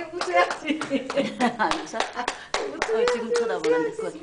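Quick, steady hand clapping, several claps a second, over people's voices talking.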